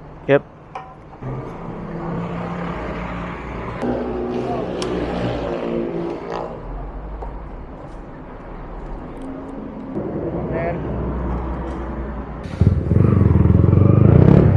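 Indistinct voices over a steady low engine hum. About a second and a half before the end, the Yamaha MT-15's single-cylinder engine comes in much louder as the motorcycle pulls away.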